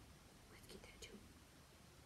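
Near silence: room tone with a faint whisper about half a second to a second in.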